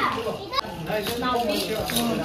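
Indistinct voices talking over one another, with a child's higher voice among them.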